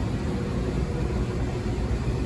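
Steady low rumble and hiss of ventilation machinery running, with no distinct knocks or changes.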